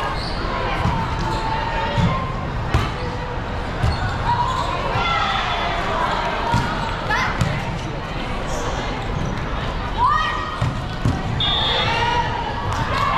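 Volleyballs being hit and bouncing on many courts in a large, echoing hall, with players' voices calling and shouting throughout.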